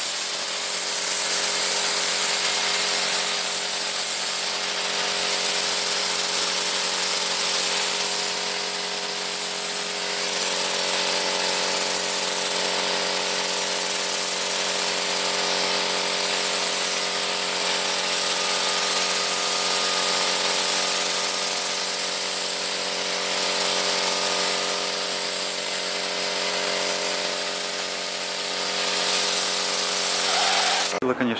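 Compressed-air spray gun hissing steadily as it atomises liquid into a fine mist, with an air compressor running underneath as a steady hum.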